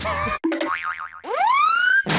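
Cartoon-style comedy sound effect: a short warbling tone, then a single rising, slide-whistle-like glide sweeping from low to high pitch.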